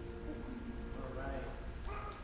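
The last held notes of the singing fade out, then a voice speaks quietly and indistinctly from about a second in, in a reverberant room.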